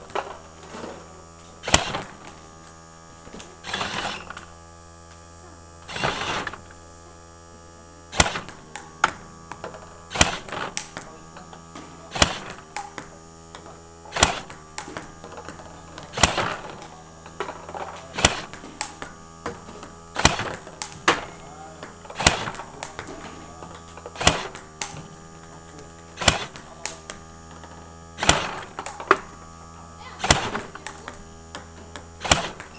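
Table tennis rally against a ball-launching robot: sharp clicks of the plastic ball being fired, bouncing on the table and struck by the paddle. The clicks come about every two seconds at first, then in quick clusters about once a second, over a steady hum.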